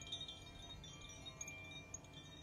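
Faint chimes ringing, several overlapping pitches sounding and fading.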